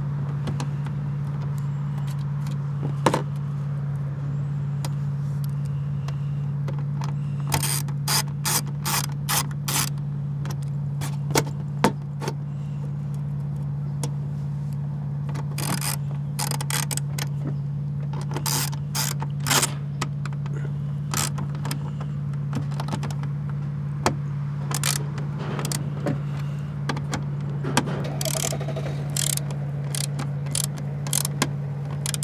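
A ratcheting hand tool clicking in short rapid bursts, several times over, above a steady low hum.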